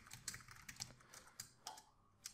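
Faint clicks of a computer keyboard: a quick run of keystrokes as code is typed.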